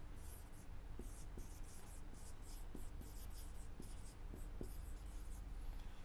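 Marker pen writing on a whiteboard: a quick run of short, quiet strokes as the letters are written.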